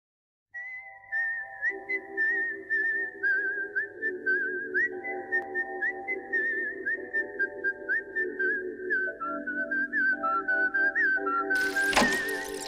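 A whistled melody with quick trills and wavers, played over a backing of sustained chords that change every second or two. Shortly before the end a burst of noise comes in.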